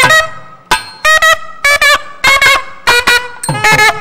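Nadaswaram playing a Carnatic melody in short, sliding, ornamented phrases, with sharp drum strokes between the notes.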